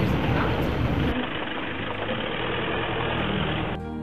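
Engine and tyre noise inside a car driving on a gravel road. About a second in, the sound cuts abruptly to a duller, muffled rushing, and music with sustained tones comes in near the end.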